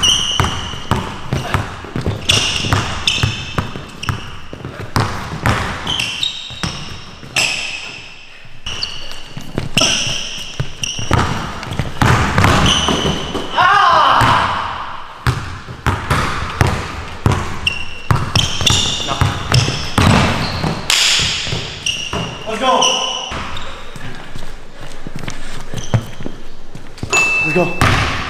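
A basketball dribbled on a hardwood gym floor, with repeated sharp bounces and sneakers squeaking as the players cut and drive, in a large echoing gym.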